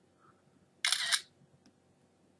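An iPod touch's camera shutter sound as a photo is taken: one short shutter click about a second in.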